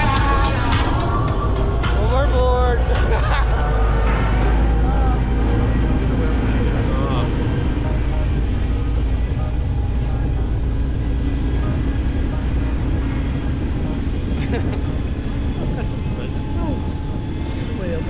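Steady low rumble of wind on the handheld pole camera's microphone, mixed with the tow boat's engine, as a tandem parasail lifts off the boat's deck; it eases slightly as they climb. Voices or music come through over the first few seconds.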